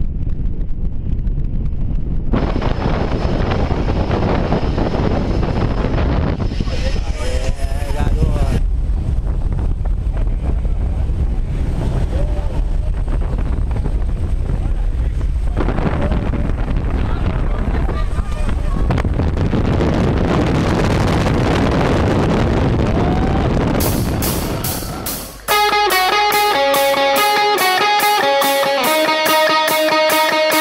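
Loud, steady noise of a skydiving jump plane's engine and wind on the microphone, with a few raised voices in it. About 25 seconds in the noise drops away and an electric-guitar rock track starts.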